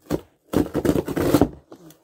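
Sticky package being prised and torn open by hand: a short rustle, then a loud rapid crackling rip lasting about a second as the packaging gives way.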